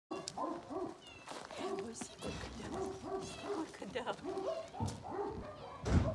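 A dog whining and yipping in many short, arching calls in quick succession, with a louder bump just before the end. A woman says "hai" once.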